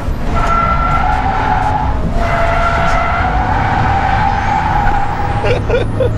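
Tyres of a Subaru BRZ squealing in a long slide through a circuit corner, a sustained squeal lasting about five seconds, over the steady running of the car's 2.0-litre flat-four engine, heard from inside the cabin.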